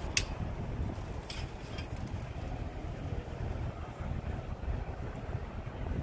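Wind buffeting the microphone outdoors as a steady low rumble, with a sharp click about a quarter second in and a few faint ticks a second or so later.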